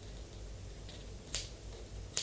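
A single crisp snip of scissors, about two-thirds of the way in, over a faint low room hum.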